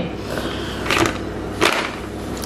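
Spinner on a cardboard jelly-bean game box being spun and the box handled, with two short knocks, about a second in and again a little after.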